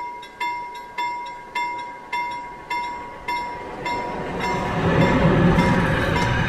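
Level-crossing warning bell ringing, a little under two evenly spaced strikes a second. From about four seconds in, a Green Cargo electric freight train arrives and its rumble of passing locomotive and wagons rises to become the loudest sound, with the bell still ringing through it.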